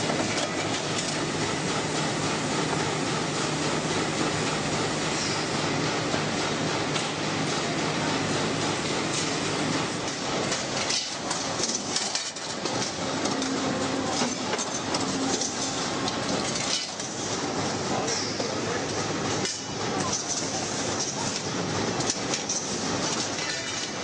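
Steel-fabrication production-line machinery running steadily, with steel channel lengths clattering on the line in a continuous metallic rattle and a few louder clanks.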